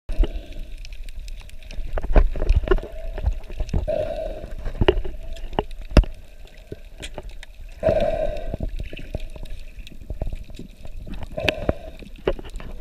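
Muffled underwater sound picked up by an action camera in a waterproof housing held at and just below the surface: water gurgling and sloshing around it, with many irregular clicks and knocks against the housing.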